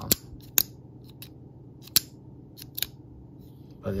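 Benchmade Mini Presidio II folding knife being worked in the hand: a series of about six sharp metallic clicks, the loudest about two seconds in.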